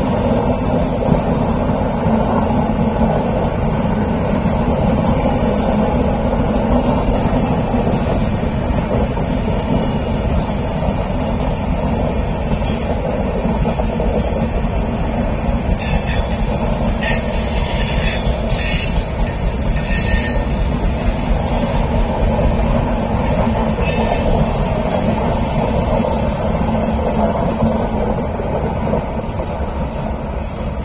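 Passenger coaches of the Yesvantpur–Bikaner Express rolling past on a sharp curve with a steady heavy rumble. Between about 16 and 24 seconds in, a run of short high-pitched squeals comes from the wheels on the curve. The rumble eases slightly near the end as the last coach goes by.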